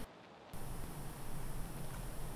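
Room tone: a steady low hiss with a faint low hum. It drops out to near silence for about the first half second, then returns.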